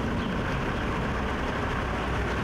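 Engine of a Kia minivan running steadily as it approaches along the lane, a low even hum with no change in level.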